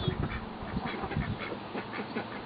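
Domestic fowl giving a run of short, quick calls, irregularly spaced.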